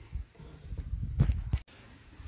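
Handling noise from a phone being carried, with a low rumble and a few quick knocks just past a second in, cut off abruptly at an edit.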